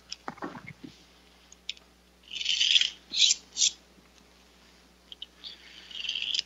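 Spring-powered pull-back toy car's motor whirring with a high-pitched buzz as it is wound and let go on the tabletop: one burst of about half a second, then two short ones.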